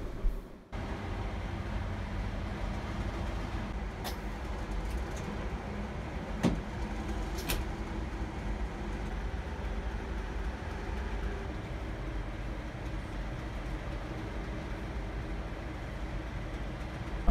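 Steady low rumble inside a passenger train carriage, with a few sharp clicks, about four, six and a half and seven and a half seconds in.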